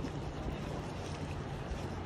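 Wind on the microphone: a steady low rumble with an even hiss over it.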